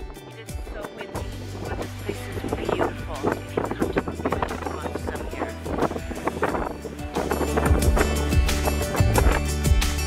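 Background music with a steady beat and bass line, getting louder about seven and a half seconds in.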